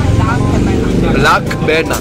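A person talking, over a steady low rumble.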